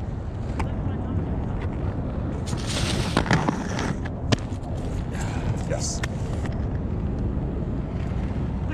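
Roces Majestic 12 aggressive inline skates on concrete: a few sharp knocks and a short scraping rush about three seconds in, the loudest knock a second later. All of it over a steady rumble of wind on the microphone.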